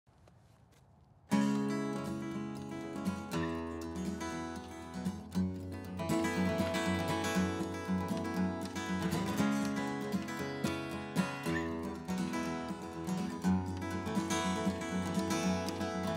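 Acoustic guitar playing the instrumental introduction of a country song, starting suddenly about a second in after near silence.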